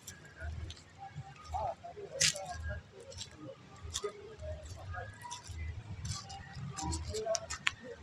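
Faint voices of people talking a little way off, with scattered short chirps and sharp clicks over a low uneven rumble.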